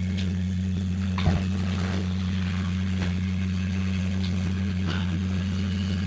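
A steady low hum, with a brief knock about a second in.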